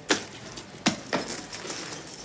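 A fabric bag being handled: rustling with three sharp clinks, one right at the start and two close together near the middle.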